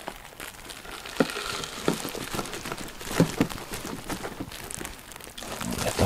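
Paper wrapping crinkling and rustling as it is unfolded by hand, with a few short, sharp crackles.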